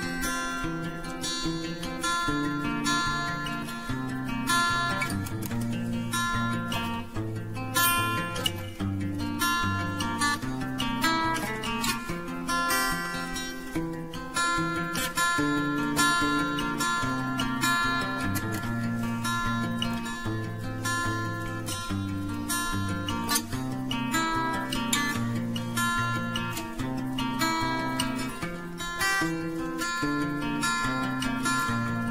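Background music: an acoustic guitar instrumental, plucked and strummed at a steady pace.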